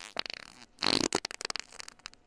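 Comic fart noise: a sputtering run of short, irregular pops, with a louder burst about a second in. It is played as a gag about an upset stomach from drinking a gallon of milk.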